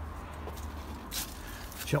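A brief rustle just after a second in, from brushing past garden plants while squeezing through, over a low steady rumble on the microphone.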